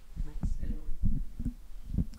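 Handheld microphone being passed from hand to hand: a run of dull low thumps and bumps as it is gripped and handled.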